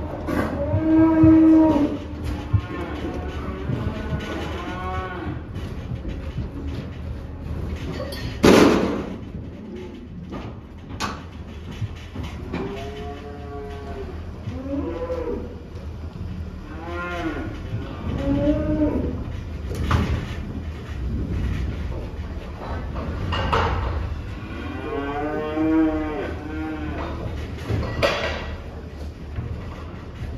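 Young Limousin calves mooing over and over, about eight or nine drawn-out calls, with several sharp loud bangs in between, the loudest about a third of the way in.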